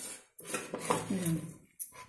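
Hand mixing grated bottle gourd and spices in a stainless steel bowl: the mix rustles and clicks against the steel, with a few sharp clinks. A brief voice-like sound falling in pitch comes in the middle.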